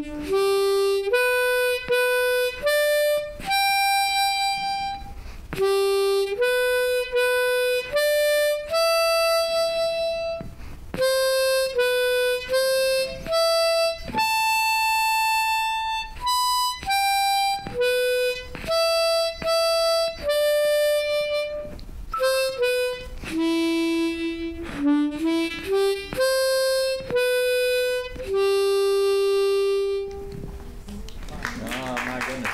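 Unaccompanied diatonic harmonica in C playing a single-note melody of separate held notes with short gaps between them, a quick run of short notes about three-quarters of the way through, and a long held note at the end.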